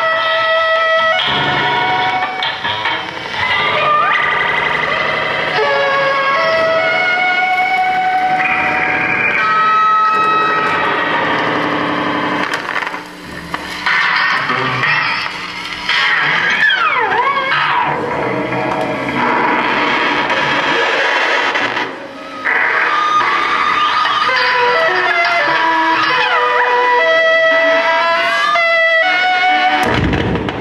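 Live experimental noise music played on tabletop electronics and effects pedals. Held electronic tones jump to new pitches every second or two, with a few sliding pitch sweeps and two short dips in level.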